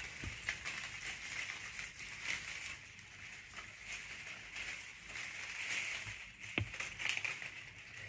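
Dried flowers and stiff dried foliage rustling as a hand-held bouquet is moved and adjusted, with one sharp click about two-thirds of the way through.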